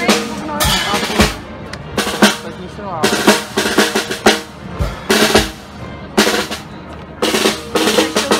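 A marching brass band's drum section playing a street cadence: snare drum rolls and rim hits, with occasional deep bass drum strokes.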